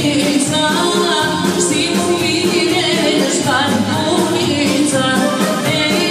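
Albanian folk dance music with a singer, playing loudly and without a break.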